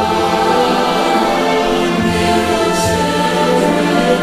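Large mixed choir singing a sustained hymn passage with orchestral accompaniment, the voices holding long chords; low bass notes come in about halfway through.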